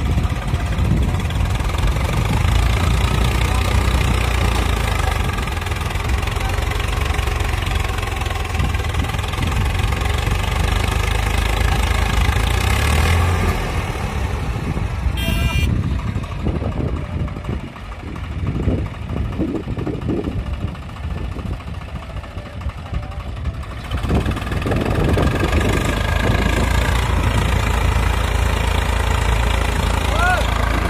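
Swaraj 744 FE tractor's three-cylinder diesel engine working hard under load, hauling a heavily loaded trolley through soft sand. The engine note drops and turns uneven for several seconds past the middle, then comes back at full strength.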